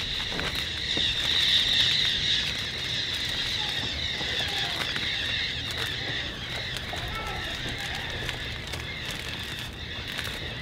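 A steady high-pitched outdoor animal chorus, loudest a second or two in, with light rustling as a plastic bag is handled and tied around a fig branch.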